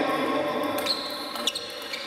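Table tennis ball in a rally, clicking sharply off the bats and the table about three times in the second half.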